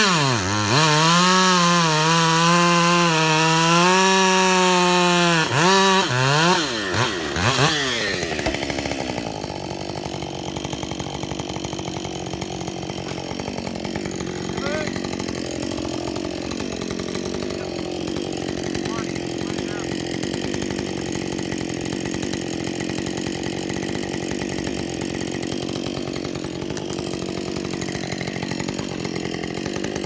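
Two-stroke chainsaw cutting into an ash trunk at full throttle, its pitch wavering under load, for about six seconds. It is revved a few more times, then settles to a steady, quieter idle.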